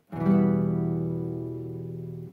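E minor chord played once on an acoustic guitar, starting a moment in and ringing on while slowly fading.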